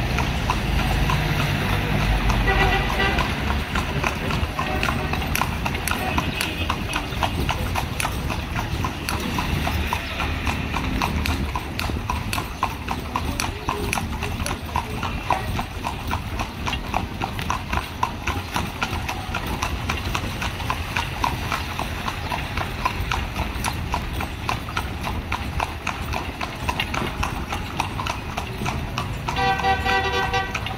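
Carriage horse's hooves clip-clopping on the paved street in a steady, even rhythm as it pulls a horse-drawn carriage.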